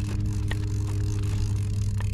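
A steady low motor hum with a broad hiss of wind and water over it, and a faint click about half a second in.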